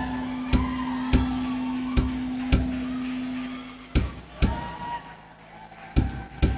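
Live band music: sharp drum hits over a held low note, which stops about four seconds in, leaving a few scattered hits.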